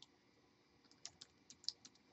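Computer keyboard keystrokes: a short run of faint, quick typing beginning about a second in.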